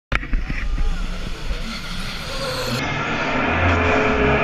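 A rally car's engine approaching and getting louder from about three seconds in, its note fairly steady. Before that there is a knock from the camera being handled at the very start, then background noise with voices.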